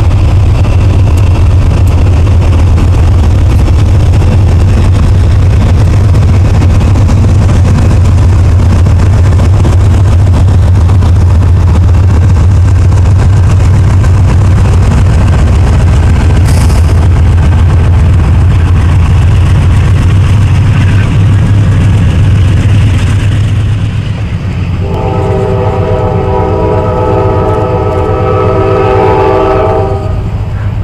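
Freight train cars rolling past close by, a loud steady rumble. About 24 seconds in the rumble falls away, and a diesel locomotive's air horn sounds one long chord of several notes for about five seconds near the end.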